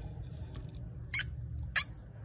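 Breath blown hard into a pressure cooker lid's steam vent pipe, a steady low rush of air, with two short high squeaks about a second in and near the end. It is a leak test of a newly fitted rubber safety fuse valve, checking whether the air escapes or holds.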